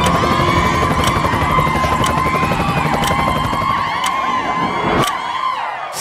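Helicopter flying overhead, its rotor a rapid low beat, over a crowd with many rising and falling whistles. The rotor sound drops away about five seconds in.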